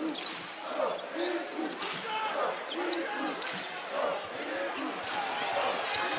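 A basketball dribbled on a hardwood court, with a crowd of voices talking in the arena behind it.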